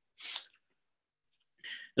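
A short, breathy noise from a person near the microphone, about a quarter second long, followed near the end by a fainter intake of breath just before speech begins.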